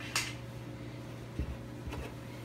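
Cotton fabric pieces being handled and laid together: a short rustle just after the start, then two soft low thumps in the second half, over a faint steady hum.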